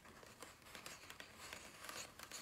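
Fingertips and nails handling the edge of a glossy book page: faint scratching and rubbing on the paper, with a scatter of small ticks and light taps as the page edge is lifted and let go.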